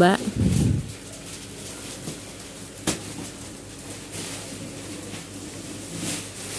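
Thick plastic wrapping on a vacuum-packed foam mattress being handled as the mattress is moved, with a low thump in the first second and a single sharp click about three seconds in, then faint rustling.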